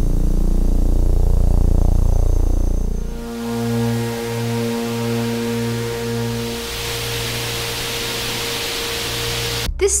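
Sonified starlight, a star's brightness flicker turned into sound: a loud low drone for about three seconds, then a few steady low tones, the lowest pulsing about five times, under a hiss that swells and holds until near the end. The hiss comes from flickering hot and cold patches of gas on the star's surface, and larger stars give more hiss.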